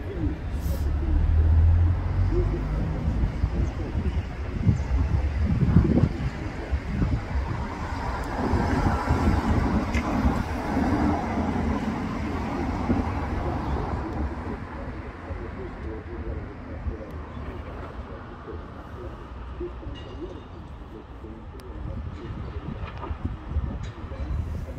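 Outdoor street ambience: a steady background of traffic with indistinct voices, louder in the first half and easing off later.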